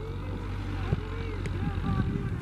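Men's voices calling and talking some distance off, with short rising-and-falling calls, over a steady low rumble of wind on the microphone; a single short knock about a second in.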